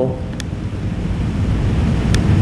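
Steady low room rumble with no speech, and a faint click about half a second in.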